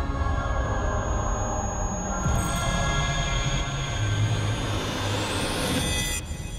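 Choir and backing music holding sustained chords. About two seconds in, a hissing swell builds and a rising whoosh climbs toward the end, then cuts off abruptly.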